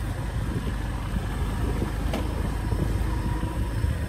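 Engine running steadily with a low rumble, with a single short click about two seconds in.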